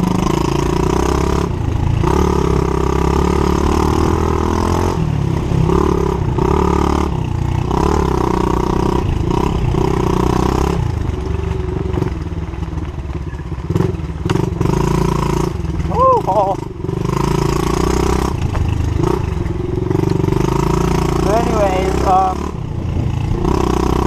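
Pit bike's small single-cylinder engine being ridden, the revs rising and falling with the throttle and briefly dropping off several times.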